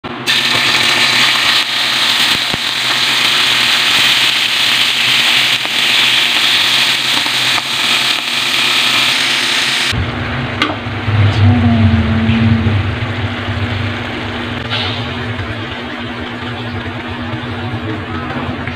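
Frying in a wok: a loud, steady sizzle for the first half. Then, after a sudden change about ten seconds in, a quieter sizzle as the pork is stirred, with a low steady hum and a few sharp clicks of the spatula against the wok.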